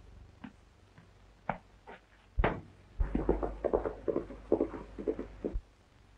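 A sharp knock, then a quick run of footsteps thudding at about four or five a second that stops shortly before the end.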